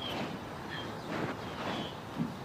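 Outdoor ambience: a steady rush of background noise with a few brief, high bird chirps, one at the start, one under a second in and one near the end.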